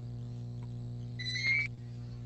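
Steady low electrical hum on a video-call audio line. About a second in, a short, level high-pitched tone sounds for roughly half a second.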